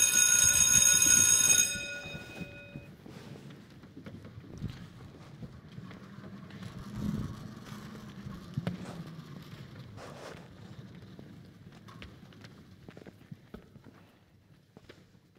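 A school bell rings loudly for about two seconds, its tone dying away by about three seconds in. After it come the faint footsteps and shuffling of children moving about on a stage, with occasional light knocks.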